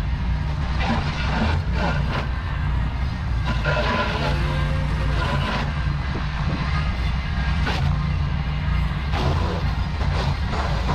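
Ventrac compact tractor with a Tough Cut brush deck running steadily while cutting tall, overgrown grass and brush.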